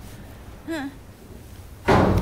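A hushed pause of low background hum with one short questioning "Hein?" spoken. Just before the end a sudden loud noise breaks in.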